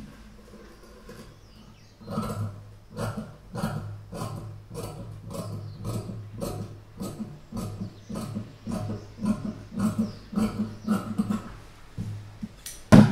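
Tailoring scissors cutting cotton blouse fabric on a table along a marked curve: a rapid run of crisp snips, about two to three a second, starting about two seconds in.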